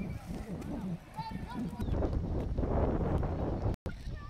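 Distant voices of children and people calling out, with a low rumbling noise in the second half. The sound drops out briefly near the end.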